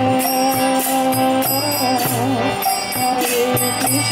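Devotional kirtan music: a harmonium holds sustained chords while karatala hand cymbals and a mridanga drum keep a steady beat.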